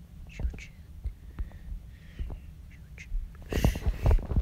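A person's quiet whispering and breathy mouth noises with a few light clicks, then a louder breathy burst near the end.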